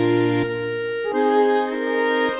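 Instrumental break of an English folk song, played on fiddle and accordion: a slow melody of held notes over sustained chords.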